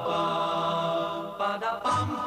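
Music: several voices singing sustained, wordless chords, with the chord changing about one and a half seconds in.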